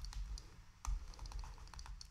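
A stylus tapping on a tablet screen in quick, irregular clicks as the short dashes of a dashed line are drawn.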